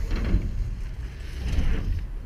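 Wind rumbling steadily on the microphone, with a faint hiss of outdoor noise above it.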